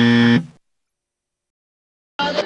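A steady, loud electronic buzz sound effect on one low pitch. It cuts off sharply about half a second in.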